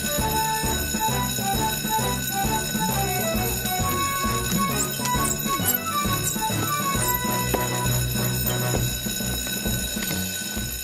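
Fire station's twin electric alarm bells ringing continuously over an upbeat music cue with a melody and a bass line.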